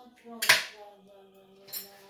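A single sharp knock about half a second in, as a kitchen utensil or cutting board is set against the counter, followed by a faint steady hum of a voice in the background.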